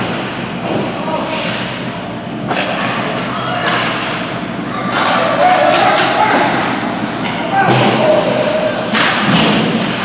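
Ice hockey play: several sharp thuds and cracks of the puck and sticks against the rink boards, over a constant murmur of spectator voices.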